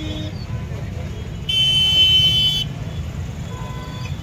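Steady low street rumble of traffic and a roadside crowd, with a loud, steady horn-like blast about a second and a half in, lasting about a second.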